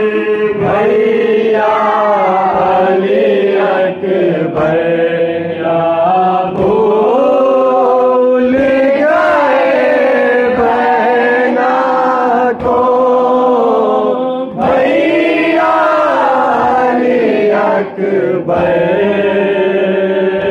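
Male voices chanting a noha, a Shia mourning elegy for Ali Akbar, in a slow, drawn-out melody with brief pauses for breath.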